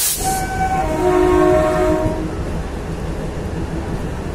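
Train horn sounding two blasts, a short higher one and then a longer, lower one, over a steady low rumble.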